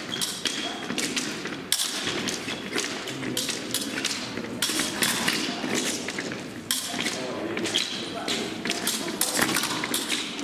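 Epee fencers' shoes thumping and tapping on the piste in quick, irregular footwork: steps, stamps and pushes as they close and open distance.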